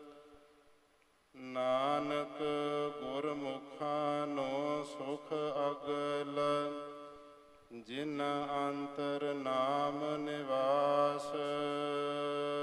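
Gurbani verses chanted by a single voice over a steady, unchanging drone. The sound fades almost to silence for the first second, comes back about a second and a half in, and pauses briefly near the end before the chant resumes.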